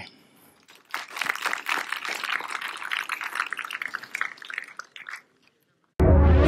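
Audience applauding, starting about a second in and cutting off abruptly about five seconds in.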